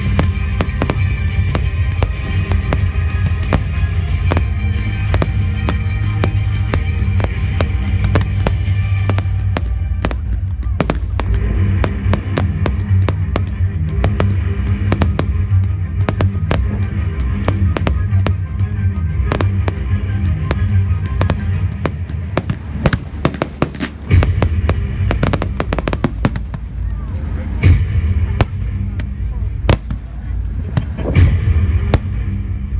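Fireworks display: a rapid run of aerial shell bangs and crackles, loudest and heaviest in the last few seconds, with music playing under it.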